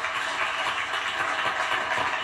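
Studio audience applauding steadily after a matched answer on a television game show.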